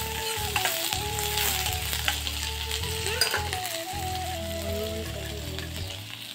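Vegetables sizzling in hot oil in a wok while a spatula stirs them, scraping or knocking against the pan a few times. Faint held tones that step slowly in pitch run underneath.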